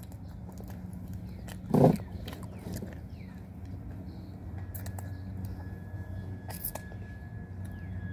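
A person eating a donut: faint chewing and finger-licking sounds, with a short hummed "mm" about two seconds in, over a steady low hum.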